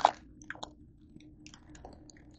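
Plastic Oreo package wrapper crinkling as it is handled: a short louder crinkle at the start, then scattered faint crackles and clicks.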